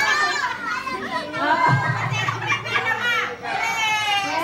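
Excited children's voices, high-pitched shouts and calls, overlapping with adults talking in a crowded group.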